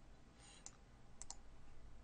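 Faint computer mouse clicks: a single click about two-thirds of a second in, then a quick double click a little after a second.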